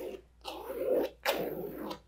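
A thin wooden stick drawn through wet poured acrylic paint, scraping across the canvas in straight raking strokes: the end of one stroke, then two more of under a second each.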